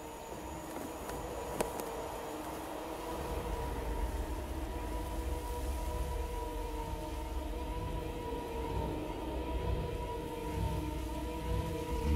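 Ominous film-score drone: sustained held notes over a deep rumble that swells about three seconds in and keeps building.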